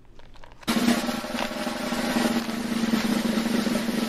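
Snare drum roll sound effect, starting suddenly under a second in and growing slightly louder.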